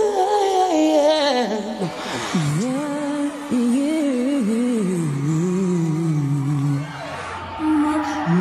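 A woman singing a slow, ornamented ballad line live, her voice swooping widely in pitch and dropping to a low note about two seconds in. The sound changes abruptly about three and a half seconds in and again near the end, where different performances are joined.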